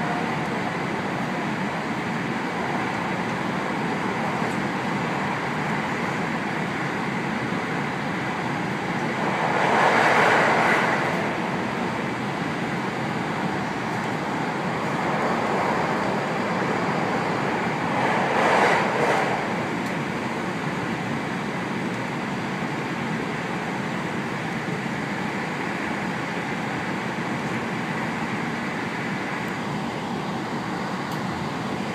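Cabin noise inside a 521-series electric train running along the line: a steady rumble and rush of wheels and air. It swells louder twice, about ten seconds in and again just before twenty seconds.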